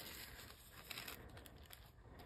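Near silence, with faint scattered rustles and light ticks from a clear plastic wrap sheet being handled over a paper card.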